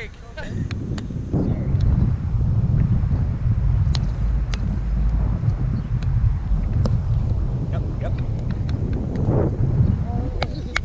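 Wind buffeting the microphone in a heavy low rumble. Scattered sharp taps come through it from the roundnet ball being hit and bouncing off the net during a rally.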